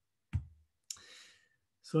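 Two clicks about half a second apart, the first with a dull low thump, the second followed by a short, faint breathy hiss.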